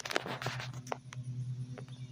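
A quick cluster of clicks and rustles near the start, then a few scattered single clicks, over the steady low drone of a distant lawn mower.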